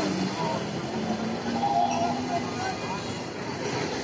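Busy street noise: a steady rumble of heavy traffic close by, with people talking.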